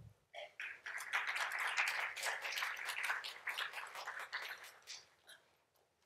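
An audience applauding: scattered claps at first, then steady clapping that thins out and stops about five seconds in.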